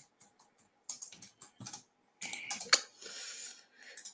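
Typing on a computer keyboard: a run of irregular keystroke clicks as a short comment is typed.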